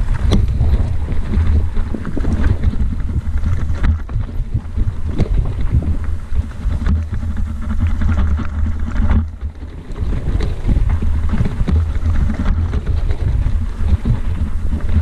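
Wind buffeting the microphone, over the rattle and knocking of a mountain bike rolling fast downhill on a rough dirt trail. The noise eases briefly about nine seconds in.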